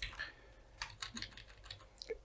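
Keystrokes on a computer keyboard during code editing: a handful of separate, irregularly spaced key clicks.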